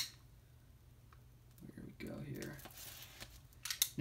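A Blu-ray package being handled and opened: faint soft rustling, then a few sharp clicks near the end, over a low steady hum.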